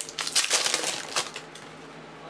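Crinkling and crackly rustling of 2013-14 Panini Select trading card packs and cards being handled, a quick run of crackles in the first second or so that then dies down.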